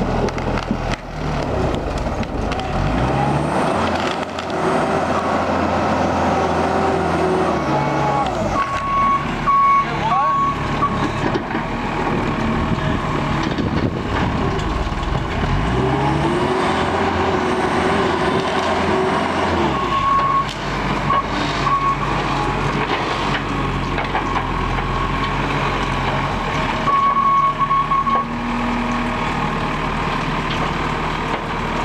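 New Holland L225 skid steer's diesel engine running under load, revving up and easing off twice as it works at the stumps with its grapple. Short high beeps, typical of its reverse alarm, come in brief groups three times.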